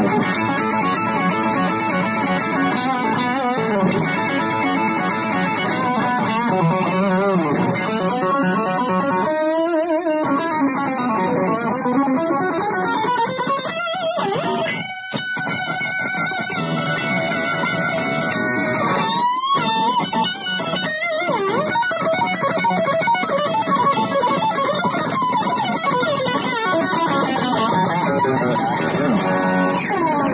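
Electric guitar playing a fast rock solo, called 'face melting', full of sustained notes and string bends, with a quick slide up in pitch about two-thirds of the way through.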